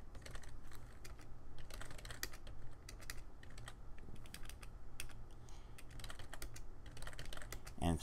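Computer keyboard typing in quick, irregular runs of keystrokes with short pauses between them, over a steady low hum.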